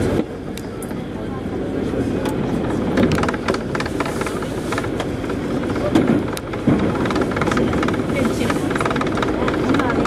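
Paris Métro line 2 train running through a tunnel: a steady rumble of wheels on rail with sharp clicks and a couple of heavier knocks from rail joints and track, about six seconds in.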